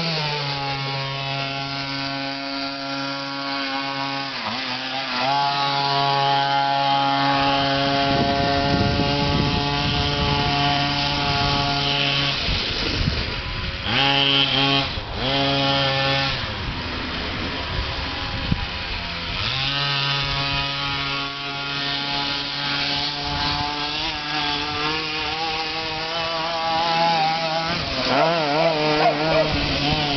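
Small two-stroke pocket-bike engine on a motorised pedal go-kart running at high revs as it drives. Its note holds mostly steady with dips and wavers, breaks up briefly in the middle and wobbles up and down near the end.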